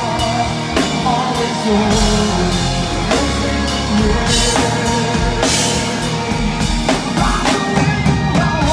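Heavy metal band playing live: drum kit with cymbals, electric guitars and bass under a male lead singer's vocal line.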